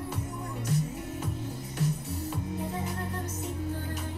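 Indonesian pop song playing from a music video: a bass line under a steady beat of about two pulses a second, with a sung melody.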